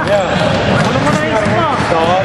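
Basketball game: a ball bouncing on a hardwood gym floor amid players running, with voices talking over it.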